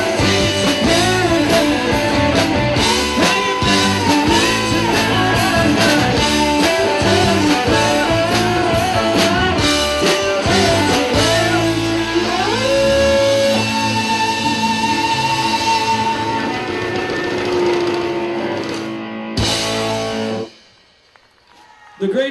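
Live rock band playing, electric guitar over a drum kit, closing with a final hit near the end that cuts off sharply into quiet.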